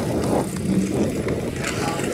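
Outdoor street ambience along a busy beachfront walkway: a steady, rumbling mix of traffic and passers-by picked up by a moving handheld camcorder.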